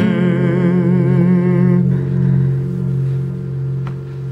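A voice holds a sung note with vibrato over a ringing acoustic guitar chord. The voice stops just under two seconds in and the chord rings on, fading, with a single click near the end.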